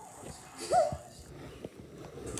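A child's voice making a short, high, animal-like squeal for a toy dinosaur, rising and then held briefly, about three-quarters of a second in. A few faint knocks follow.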